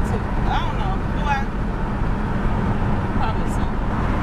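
Steady low rumble of road and engine noise inside the cabin of a moving car, with a voice heard briefly in the first second and a half.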